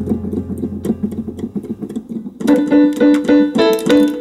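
Digital piano keyboard being played: a quick run of short notes over a low held bass note, then, from about halfway, louder repeated chords and held notes.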